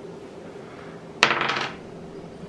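A wooden game die rolled onto a table: a sharp clack about a second in, followed by a brief rattle as it bounces and settles.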